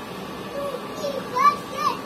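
A high-pitched, childlike voice making a few short squeaky calls, the loudest two about a second and a half in, over a faint steady hum.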